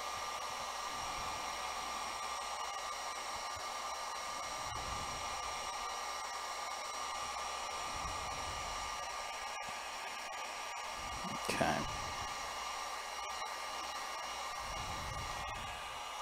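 Electric heat gun blowing steadily, a constant rush of hot air with a thin steady whine, aimed at a smartphone to heat it so the glass and its adhesive will come loose.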